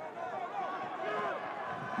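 Faint voices over a steady background of stadium noise.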